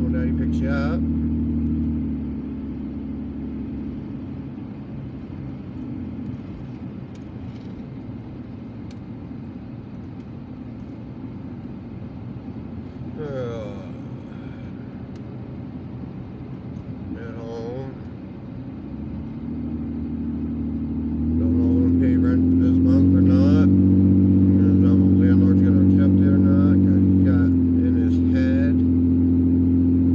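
Car engine and road noise heard from inside the cabin while driving. A steady engine drone eases off about two seconds in, leaving quieter tyre and road noise. It builds back up about twenty seconds in and holds loud and steady to the end.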